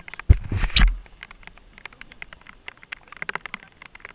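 A brief rumbling buffet on the helmet camera's microphone about half a second in, then scattered light ticks of raindrops hitting the camera.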